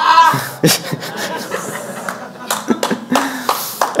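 Audience laughing in a hall, with scattered clapping. A man laughs close to the microphone at the start.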